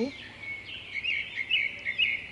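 Small birds chirping: a string of short, quick high notes repeated several times over a steady outdoor background hiss.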